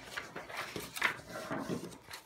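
Sheets of drawing paper rustling and sliding as they are handled and laid on a wooden table, with a louder rustle about a second in.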